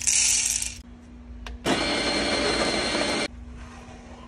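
Whole coffee beans rattle as they are poured into the hopper of a Fellow Opus conical burr grinder. About a second later the grinder's motor runs steadily for about a second and a half, grinding the beans, then cuts off.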